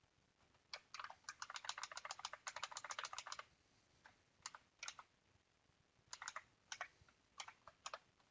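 Typing on a computer keyboard: a quick run of keystrokes lasting about two and a half seconds, then a few separate key presses, one or two at a time. This is order entry in a trading platform.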